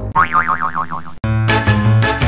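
A cartoon boing sound effect, its pitch wobbling up and down for about a second, cut off abruptly by lively, upbeat background music.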